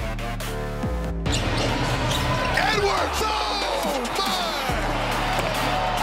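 Background music with steady bass tones. About a second in, basketball game audio cuts in: a ball bouncing and sneakers squeaking on the hardwood in short rising-and-falling squeaks, over crowd noise.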